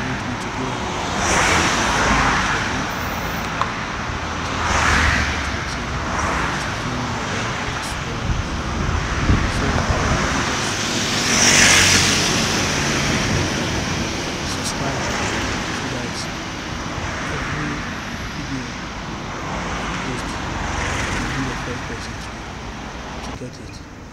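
Roadside traffic: cars and other motor vehicles passing along a paved road one after another in several swells, the loudest about twelve seconds in as a loaded cargo motor tricycle goes by close.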